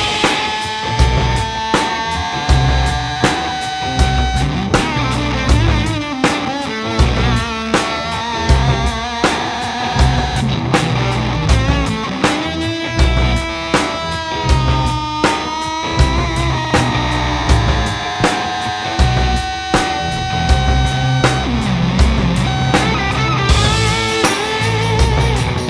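Rock mix of several electric guitar tracks distorted by a germanium-transistor fuzz pedal (Wrought Iron Effects H-1 Germanium Carrier Rocket), with bass underneath and a steady drum beat. A held lead guitar line with slides and bends rides on top.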